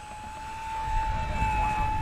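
Electric motor and propeller of a 1100 mm foam RC Spitfire whining at low throttle on a slow pass. The steady tone gets louder and creeps slightly up in pitch as the plane approaches, and wind rumbles on the microphone in the second half.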